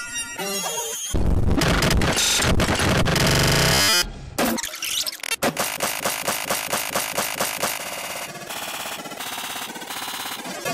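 Harsh, distorted cacophony from an edited cartoon soundtrack, loud for about three seconds and then cutting off abruptly. It is followed by a short snippet of sound looped in a rapid stutter several times a second.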